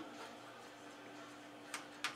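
A single short click about three-quarters of the way in, as an RCA plug is pushed onto a jack on the back of a stereo receiver, over a faint steady hum.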